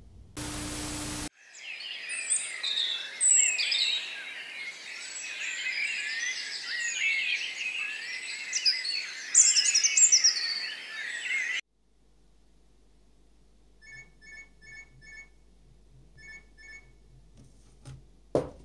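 A dense chorus of many birds chirping and singing, which cuts off suddenly about eleven and a half seconds in, after a short burst of noise at the start. Later come two short runs of quick, evenly spaced electronic beeps.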